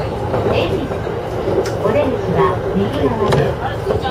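E231 series electric train running, its steady rolling rumble heard from inside the cab, under the voice of a recorded onboard announcement.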